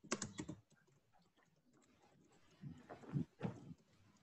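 Typing on a computer keyboard: a short run of keystrokes, a pause of about two seconds, then another run of keystrokes.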